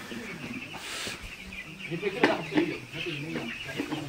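Many young chicks peeping together in a steady chorus, with people's voices faintly mixed in.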